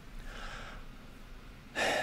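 A man's soft breath out, then a short, audible intake of breath near the end.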